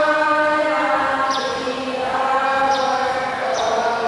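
Voices singing a slow, chant-like liturgical hymn in long held notes, with a few short clicks about a second in, near three seconds and near the end.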